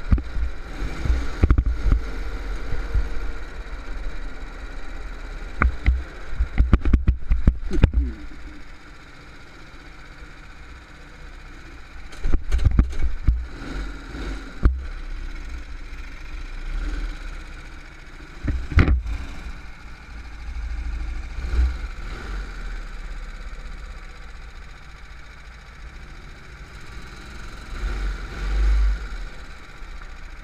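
A go-kart engine running at low revs, heard onboard with heavy low rumble, as the kart rolls slowly. Several clusters of sharp knocks and thuds come through, a few times over.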